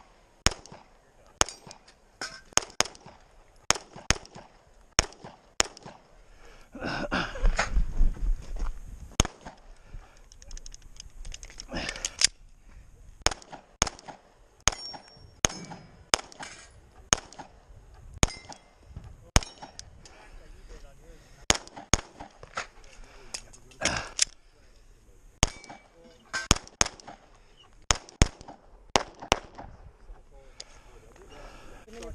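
Semi-automatic pistol shots fired in quick pairs and short strings through a timed practical-shooting course of fire, dozens of shots in all. A louder rushing noise with a deep rumble cuts in for about two seconds around seven seconds in.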